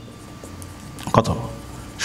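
Marker pen writing on a whiteboard, a few faint strokes over a steady low room hum, with one short spoken word about a second in.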